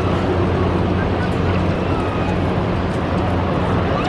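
Steady roar of Niagara Falls, an even rushing of falling water, with faint voices of people nearby.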